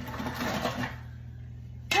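Ketchup being squeezed out of a plastic squeeze bottle: a rasping, sputtering noise for about the first second, then quieter.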